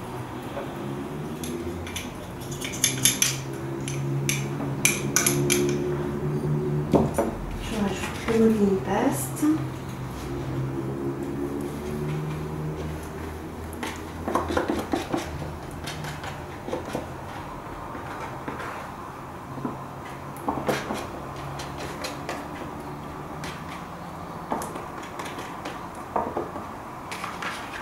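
Metal palette knives clicking and scraping against each other and the palette as acrylic paint is picked up and mixed, in scattered clusters of sharp clinks. A low, steady droning hum runs underneath.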